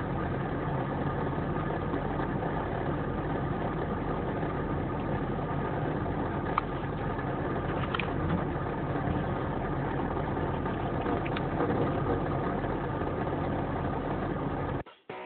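Heavy dump truck's engine running steadily while the truck, stuck in mud, tips over onto its side, with a few brief sharp clicks.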